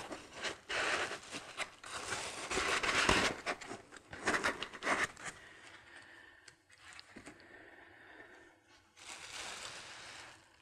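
Foam packing being pulled off a resin wash-and-cure machine and handled: irregular rustling and scraping, busiest in the first half, sparser and fainter later, with a short burst of rustling near the end.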